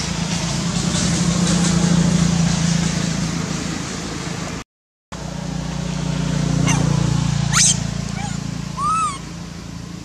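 A steady low hum, cut off for about half a second just before the middle. Near the end it is joined by two short calls from a macaque: a quick rising squeal, then a brief arched call a little over a second later.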